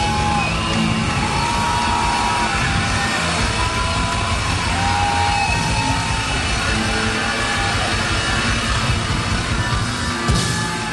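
Live rock band playing loudly: electric guitars over drums, with long held notes that bend in pitch.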